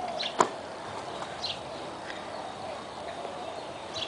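A single sharp knock about half a second in, then a quiet outdoor background with a few faint, short high chirps.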